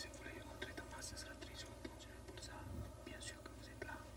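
Faint male whispering, one man whispering close to another's ear, over a low steady hum.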